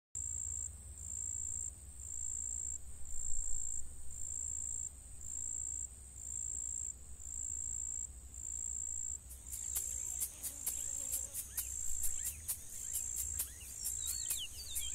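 An insect chirps in a high, evenly pulsed trill of about three pulses every two seconds, over a low rumble. From about two-thirds of the way in, sharp ticks and short chirping calls join it.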